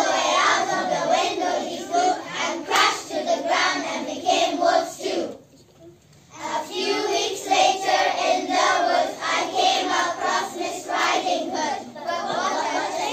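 A group of young children singing together in unison, breaking off for about a second midway before carrying on.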